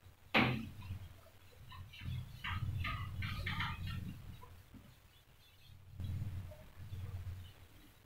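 Whiteboard being wiped clean with a duster: a sharp knock near the start, then rubbing strokes with a run of short squeaks from the duster on the board about two to four seconds in, and more rubbing later.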